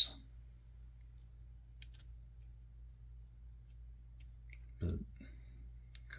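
Faint, sparse clicks of small 3D puzzle pieces being handled and fitted together, two of them close together about two seconds in.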